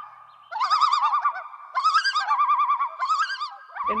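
A loud, bird-like warbling whistle: a high note that wavers rapidly, in three bursts with steady held tones between them.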